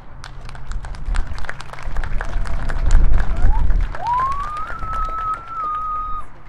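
Crowd applauding, with many hand claps, after a marching band performance. About four seconds in, a long, steady whistle from a spectator begins and holds to the end.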